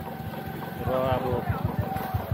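A motorcycle engine idling close by with an even low putter, several beats a second. A voice speaks briefly over it about a second in.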